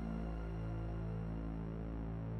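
Ambient film-score music holding a low, steady drone of sustained notes.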